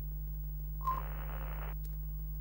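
A steady low electrical hum, of the kind an old television test card gives off. A short beep comes about a second in, then nearly a second of static hiss, then a single click just before the end.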